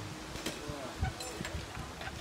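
Faint, distant voices talking, quieter than the nearby coaching before and after.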